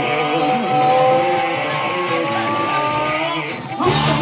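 Distorted electric guitar holding a long sustained lead note that bends slowly upward over a low bass line. Near the end a quick pitch swoop leads into the full band playing.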